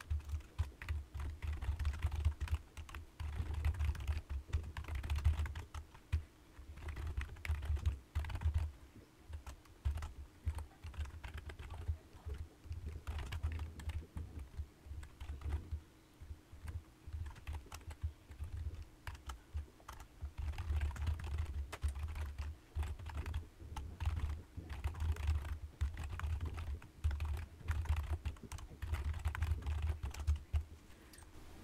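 Computer keyboard typing in quick, irregular runs of keystrokes, each click with a dull thud under it. The typing eases off to a few scattered keys for a few seconds past the middle, then picks up again.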